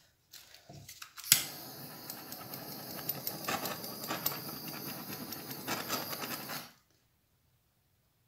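Handheld gas torch lighting with a sharp click about a second in, then burning with a steady hissing flame for about five seconds before it cuts off suddenly.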